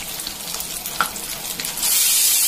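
Masala-coated fish pieces shallow-frying in hot oil in a stainless steel pan, sizzling with scattered crackles and one sharp pop about a second in. Near the end the sound jumps to a much louder, steady hiss.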